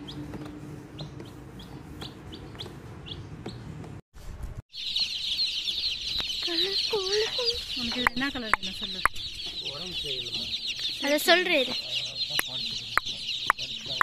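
Baby chicks peeping. For the first few seconds there are only scattered single peeps. After a brief break, a large crowd of chicks peeps densely and without let-up, with a few lower-pitched calls mixed in.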